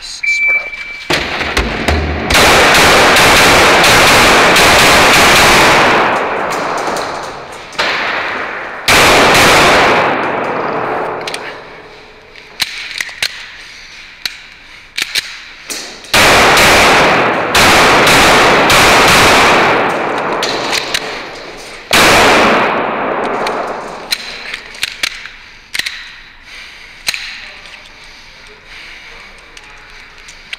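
Rapid semi-automatic 9mm pistol fire from a Glock 17 in several fast strings of shots, with pauses between strings. Each shot rings on through the echo of an indoor range.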